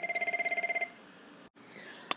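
A phone ringing with a rapid warbling trill that stops under a second in.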